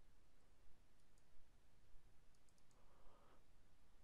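Faint computer mouse clicks over near-silent room tone: a couple of light clicks about a second in, then a quick run of four or five just past the middle, while points are placed along a CAD spline.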